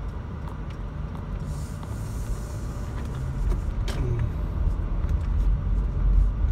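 Car cabin noise while driving: a steady low rumble of engine and tyres that grows louder in the second half, with a faint click about four seconds in.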